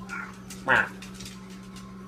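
Short meows traded between a man and a black cat: a faint one at the start and a louder one a little under a second in, over a steady low hum.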